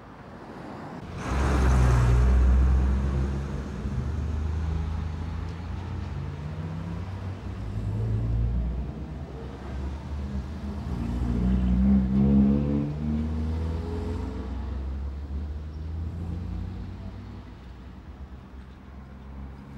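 A motor vehicle engine running close by: a low, steady hum that grows louder about a second in and swells again around twelve seconds as its pitch rises.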